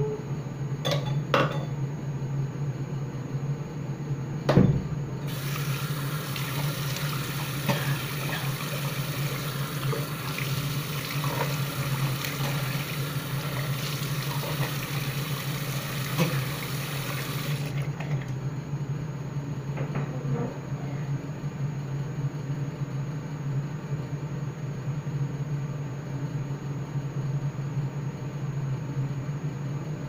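Water running from a bathroom tap for about thirteen seconds, then cut off suddenly, over a steady low hum. A thump and a few clicks come before the water starts.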